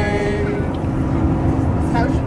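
Unaccompanied Gaelic psalm singing ends on a held note about half a second in, leaving the steady low rumble of a moving coach's engine and road noise heard from inside. A voice starts speaking near the end.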